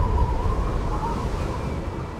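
Wind rumbling on a mountaintop, with a thin high tone held steadily over it, both slowly fading.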